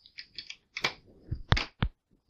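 A USB flash drive being pushed into a port of a cheap plastic seven-port USB 3 hub: a scattered run of small clicks and scrapes, the sharpest clicks coming in the second half.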